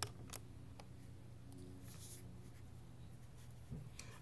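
A few faint, sharp plastic clicks in the first second as a small Lego door piece is swung open by hand, then quiet room tone.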